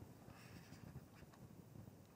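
Near silence, with faint scratching of a stylus drawing lines on a tablet.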